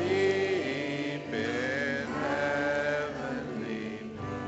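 A woman singing a slow song into a microphone over sustained piano and electric guitar chords; her voice holds long notes with vibrato, in two phrases split by a short breath about a second in.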